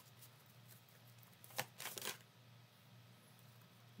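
Tarot cards being shuffled by hand: quiet sliding and rustling of the deck with a few sharp card snaps around the middle, over a faint steady low hum.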